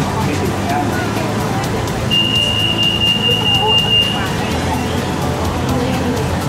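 Bangkok MRT Blue Line metro train running, heard from inside the car: a steady low noise of wheels and motors, with a thin high steady tone that lasts about two seconds in the middle.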